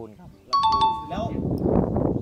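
A bright two-note ding-dong chime, a high note then a lower one, struck in quick repeats about half a second in, used as an editing sound effect. It is followed by laughter.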